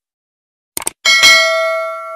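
Subscribe-button sound effect: a quick double mouse click, then a bright notification-bell ding that rings on and fades away.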